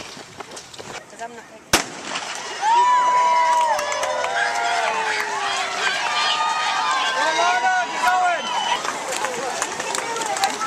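A starting pistol fires once, a sharp bang about two seconds in, then a crowd of many voices cheers and shouts as the race starts.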